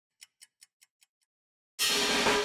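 A run of six quick ticks, about five a second and fading away, from the channel's intro sound effect; near the end, music with drums comes in loudly.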